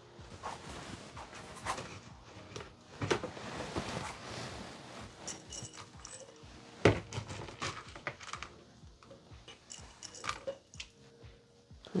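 Cooked brown rice being scooped from a colander into a glass mason jar: grains rustling and scraping, with a few sharp knocks, the loudest about seven seconds in.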